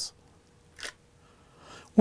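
Nikon D7000 DSLR in Quiet Shutter mode giving one short click a little under a second in: the mirror dropping back down as the shutter button is released.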